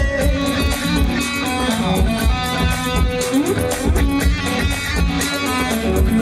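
Band music: an instrumental passage led by electric guitar over a steady low beat, after a held sung note fades out just at the start.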